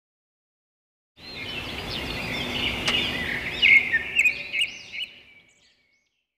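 Birds chirping over a background hiss. It starts about a second in, gets busiest with quick chirps in the middle, and fades out about five seconds in.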